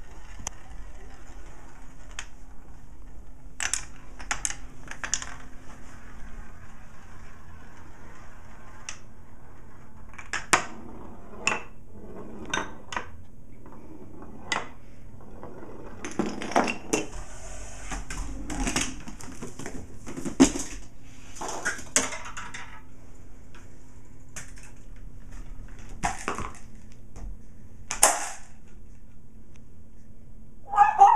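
A home-made chain-reaction machine running: a steel marble rolling around a wooden spiral marble run, then a long series of separate sharp clicks, knocks and clatters as dominoes, levers, books and other parts fall and strike one another. The knocks come irregularly throughout and are busiest in the middle.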